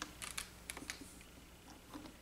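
Faint, scattered light clicks and taps of plastic as the hinged clear plate of a stamp-positioning tool is handled and swung up off the freshly stamped paper.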